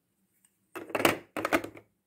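Hard plastic puzzle tiles clacking and scraping as a cover piece is set into a plastic game tray, in two short runs of clatter starting about a second in.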